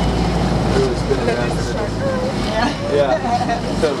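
Tour boat's engine running with a steady low drone that cuts off just before the end, with people's voices over it.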